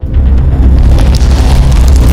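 Cinematic logo sting sound effect: a loud, deep booming rumble with crackling over it and music, starting abruptly.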